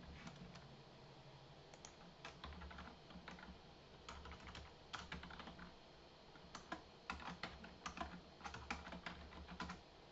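Computer keyboard typing, faint, in short irregular bursts of keystrokes that come thicker in the second half.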